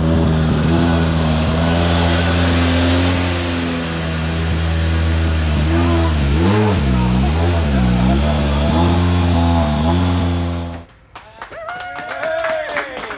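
Hyundai i20 Coupe WRC's turbocharged four-cylinder engine idling, blipped up and down several times about six to eight seconds in, then switched off abruptly near the end. Hand clapping starts right after the engine stops.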